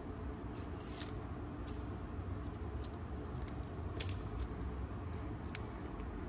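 Faint, scattered clicks and light handling noises from peeling the red liner strips off the adhesive tape on a plastic grill cover, over a steady low hum.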